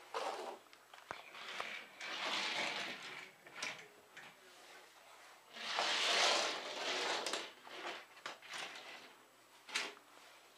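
Scraping and sliding on a hardwood floor with scattered light clicks, from a small child moving about on the floor and handling small toy cars. There are two longer stretches of scraping, the louder one about six seconds in.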